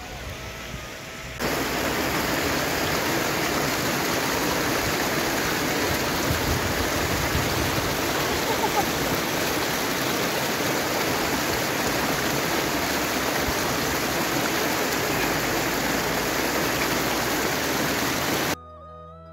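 A small mountain stream splashing down over rocks, heard close up as a loud, steady rush of water that starts about a second and a half in.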